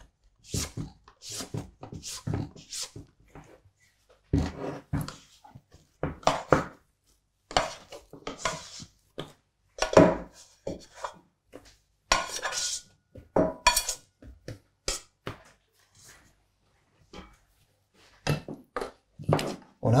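Stainless-steel mixing bowl being handled and tipped as bread dough is eased out onto a floured wooden worktop: a string of irregular scrapes, knocks and light metal clinks, with soft pats of hands on the dough.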